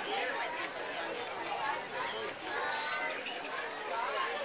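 Chatter of several people talking over one another, children's voices among them, with no words standing out clearly.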